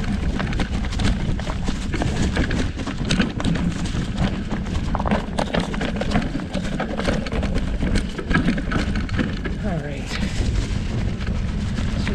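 Rigid Surly Krampus mountain bike rolling down a rocky, leaf-strewn trail. Its fat knobby tyres crunch over dry leaves and loose stones, and the unsuspended bike rattles with many quick knocks, over a steady low rumble of wind on the camera microphone.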